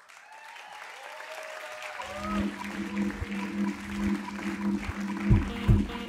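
Audience applause and cheering swell up. About two seconds in, the duo's set begins: a held low keyboard note with kick drum hits.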